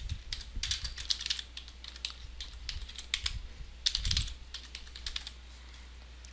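Computer keyboard typing: a quick run of key presses as a password is typed into a web form, with a louder clatter of keys about four seconds in. The keystrokes stop a little after five seconds, leaving a low steady hum.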